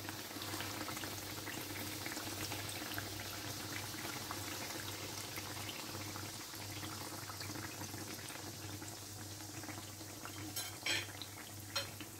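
Yeast-dough doughnuts deep-frying in hot oil in a pan: a steady fizzing sizzle of fine crackles. A few brief sharp ticks sound near the end.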